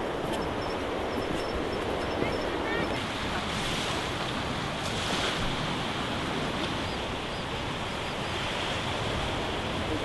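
Steady wash of sea surf breaking on a rocky shore, with wind on the microphone.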